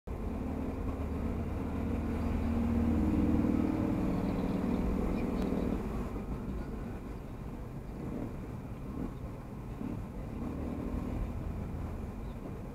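Engine and road noise heard inside a moving car's cabin, with a louder engine hum from about two to six seconds in that then falls back to a quieter rumble.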